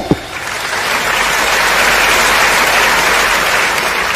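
Audience applause from a large seated crowd, building up over the first second, holding steady, then easing slightly near the end.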